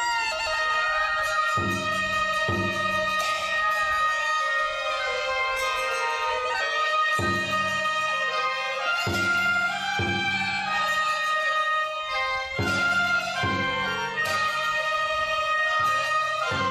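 Traditional Chinese wind and percussion ensemble. Several sheng mouth organs hold steady chords under a wavering reed-pipe melody, with low percussion strokes every few seconds, often in pairs.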